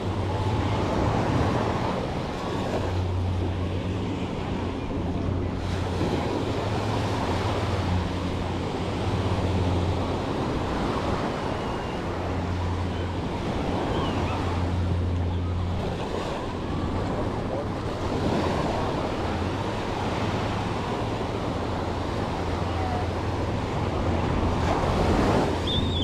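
Small waves washing up onto a sandy beach, the wash swelling and falling back every several seconds, over a steady low rumble of wind on the microphone.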